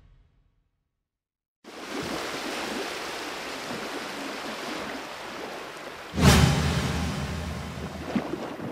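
Added sound design. After a moment of silence, a steady rushing noise like sea surf starts. About six seconds in comes a sudden whoosh with a deep boom that slowly fades.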